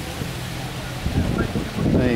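Steady hiss of water running down the face of a steel water-wall fountain, with low wind buffeting on the microphone in the second half.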